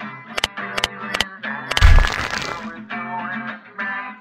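Outro music with plucked-string notes, punctuated by several sharp clicks, then a loud crash-and-shatter sound effect with a heavy low thud about two seconds in that dies away over about a second.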